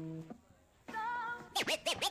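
DJ record scratching: the previous music cuts off shortly after the start, a short gap follows, then a wavering note and quick back-and-forth scratch sweeps rising and falling in pitch in the last half second.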